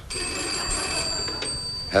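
Telephone bell ringing steadily.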